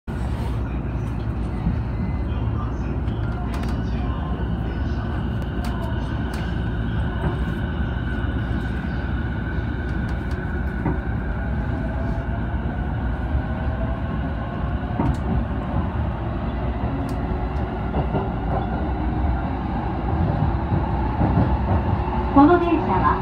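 Cabin sound of a JR East E233-series electric train pulling away and gathering speed: steady rumbling running noise with a faint whine from the traction motors that slowly rises in pitch, and occasional sharp clicks from the wheels on the track.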